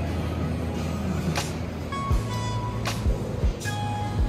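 Background music with a deep bass line and a drum beat of low, dropping kick thumps and cymbal hits.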